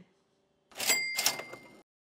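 Cash register 'cha-ching' sound effect: two quick metallic strikes with a ringing bell tone, starting about two-thirds of a second in and cutting off suddenly about a second later.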